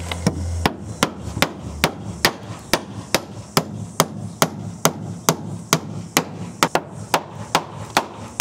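Steel claw hammer driving a nail into a timber weatherboard, with a steady run of sharp strikes about two to three a second.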